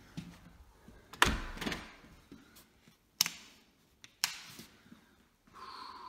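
Three sharp knocks or clicks, the first and loudest about a second in with a low thump, the others about three and four seconds in, amid handheld camera rustle. A faint steady hum begins near the end.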